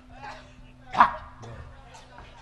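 A single short, loud yelp about a second in, like a bark, over a steady low hum.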